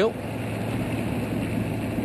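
Steady road and running noise of a car driving itself, an even hiss with a constant low hum.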